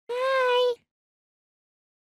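One short, high-pitched vocal wail held at a nearly steady pitch for under a second, cutting off abruptly.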